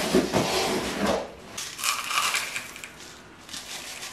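Loose granular pon substrate scooped and poured with a plastic cup into a plastic pot: a gritty rattling crunch of grains in bouts, dying down over the last second or so.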